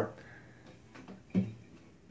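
A pause in a man's talking: quiet room tone, broken by one short vocal sound, a brief syllable or breath, about a second and a half in.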